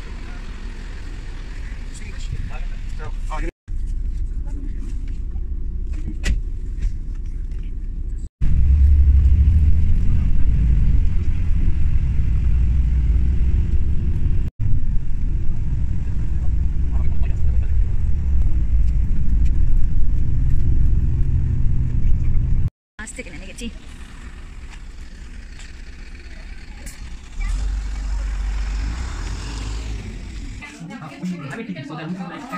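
Steady low rumble of a city bus's engine and tyres heard from inside the moving bus, the loudest stretch, in the middle of the clip. It is set between quieter outdoor sound at a bus stop and a parking area, with hard cuts between short clips.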